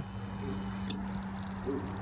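A steady low hum, with a horse's soft hoof steps in arena sand and a single light click or knock about a second in.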